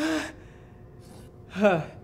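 A man's short breathy laugh close to a handheld microphone, then a falling spoken "uh" near the end.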